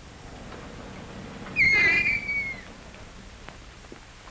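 A single whistle-like tone about a second long, starting sharply about a second and a half in and falling slightly in pitch.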